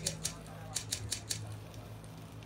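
A short gap in the music: a low steady hum with a quick run of sharp, dry clicks in the first second and a half, then only the hum.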